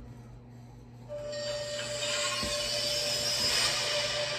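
Low room tone with a steady hum, then about a second in a film trailer's opening soundtrack starts: a hissing wash of sound with one steady held tone under it, an eerie drone.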